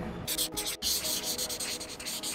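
Rapid, even back-and-forth rubbing, a high hissy scraping like sanding, starting a moment in with a short break just before the middle.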